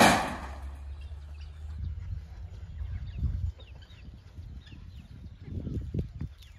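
A sudden clatter at the very start, the loudest sound, then wind rumbling on the microphone for about three seconds. Faint scattered chirps and calls from the poultry run through it.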